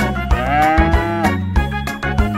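A cartoon cow's single long moo, about a second, its pitch arching up and then down, over bouncy children's-song backing music.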